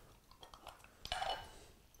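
A small tub of plunger blossom cutters being opened: a few faint clicks, then a light clink about a second in as its clear lid comes off.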